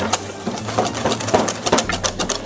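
Hand whisk beating a cream mixture in a stainless steel bowl, its wires clicking against the metal in quick, uneven strokes.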